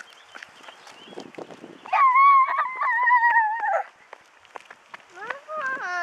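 A young child's high-pitched squeal, held steady for nearly two seconds, followed near the end by a shorter wavering cry.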